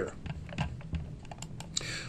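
A few faint, scattered taps on a computer keyboard.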